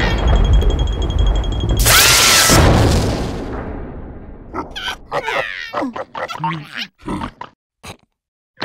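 Cartoon sound effects: a loud blast about two seconds in that dies away over the next two seconds, leaving the scene in smoke. It is followed by short grunts and squeaky vocal noises from the cartoon insect characters.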